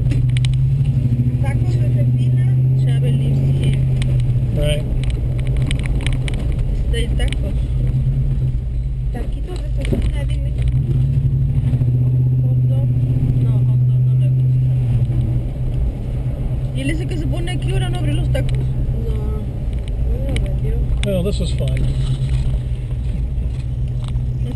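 Car engine and road noise heard inside the cabin while driving slowly through town streets, a steady low drone that swells twice under throttle.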